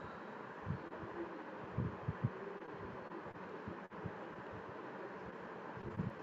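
Steady background hiss from an open call microphone, with a few soft low thumps about one and two seconds in.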